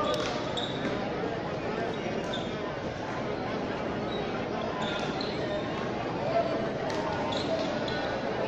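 Frontball rally: the rubber ball knocking against the front wall and floor a few times, the loudest knock about six and a half seconds in, with several short sneaker squeaks on the court, over a steady murmur of crowd voices.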